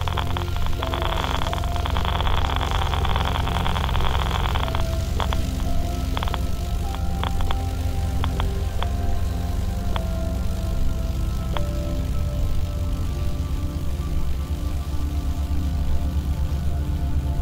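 Ambient sound-design soundscape: a deep steady drone with several held tones, dense crackling for the first five seconds or so, then scattered single clicks.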